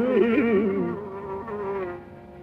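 Carnatic classical music in raga Kedaragowla: a low melodic line with sliding ornaments settles on a held note about a second in and fades, leaving a faint steady drone underneath.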